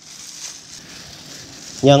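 Faint, even crinkling rustle of a thin plastic food-prep glove as a gloved hand moves over a steel bowl of rolled mooncake filling balls; a spoken word comes in near the end.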